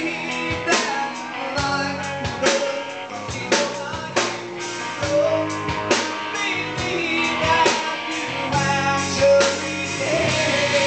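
Live rock band playing: electric guitar, bass and drum kit, with sharp drum hits over sustained low bass notes.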